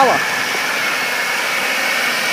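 2005 Chevrolet Impala's 3800 V6 engine idling with the hood open: a steady whir with a thin, high, steady whine over it.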